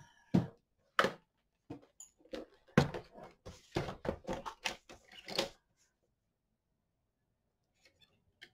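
A run of knocks and clatter as a plastic sliding paper trimmer is moved and set down on the tabletop and cardstock is handled on it, over about the first five seconds.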